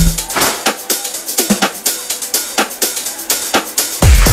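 House music from a DJ mix played over a club sound system, with a steady beat of drum and hi-hat strokes about twice a second. The bass is cut out for most of the stretch, leaving thin percussion, then drops back in at full weight right at the end.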